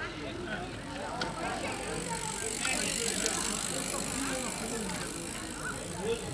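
A racing road bicycle rolling past close by: a hiss of tyres on asphalt that grows from about halfway through. Under it, people talk in the background.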